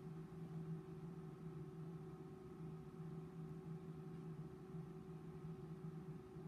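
Faint steady hum, a low tone with a few fainter higher tones, from an Instron universal testing machine running slowly partway through a tensile test, still loading the specimen before it breaks.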